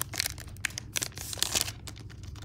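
Foil wrapper of a Pokémon booster pack crinkling as the cards are drawn out of the freshly cut pack: a quick, irregular run of sharp rustles that thins out near the end.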